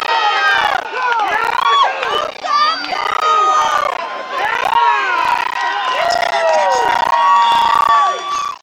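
Spectators cheering and yelling together as a youth football player breaks away on a long run, many voices overlapping. In the last few seconds one voice holds a long, drawn-out shout.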